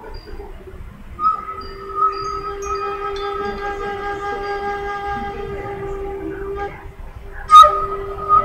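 A sustained chord of several steady tones held for about five and a half seconds, breaking off briefly and then starting again. A single sharp, loud sound comes just before it resumes.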